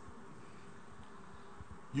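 Faint steady room tone: a low hum with hiss, unchanging throughout.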